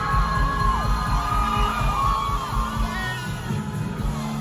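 Indie rock band playing live on electric guitars, bass and drums, heard from within the crowd, with audience members shouting over the music.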